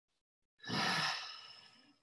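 A long audible sigh: a breath let out through the mouth close to the microphone. It starts suddenly about half a second in and trails off over the next second and a half.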